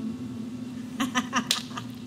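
A banjo chord fading out after the playing stops. Between about one and two seconds in come a few short clicks and brief snatches of voice.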